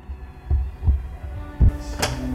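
Three deep, low thumps in the film's soundtrack, a heartbeat-like throb over a low rumble; the last thump is the loudest, and a brief high hiss follows near the end.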